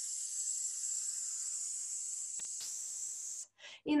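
A woman's drawn-out, steady 'sss' hiss, the prolonged S of 'здравствуйте' held as one long, even exhalation in a breathing exercise. It gets sharper about two and a half seconds in and stops shortly before the end.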